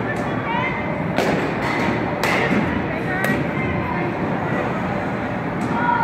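Indoor batting-cage hubbub: a steady din with faint distant voices, broken by a few sharp knocks about one, two and three seconds in.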